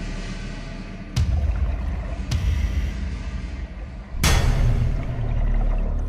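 Underwater rush of a scuba diver's exhaled bubbles from the regulator, coming in several gushes over a low rumble, the loudest starting about four seconds in. Background music plays faintly underneath.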